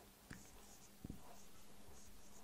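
Felt-tip marker writing on a whiteboard, very faint: two light taps of the tip, then soft strokes.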